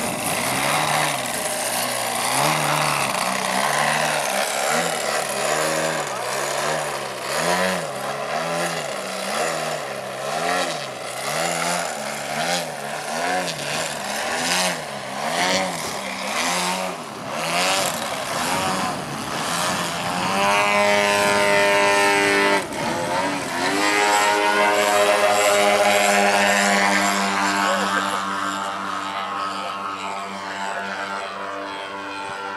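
Model aircraft engine and propeller of a large RC Extra aerobatic plane (GP 123 engine), its pitch wobbling up and down about once a second while the plane hangs nose-up in a hover. In the last third it opens to a louder, steadier run as the plane climbs away.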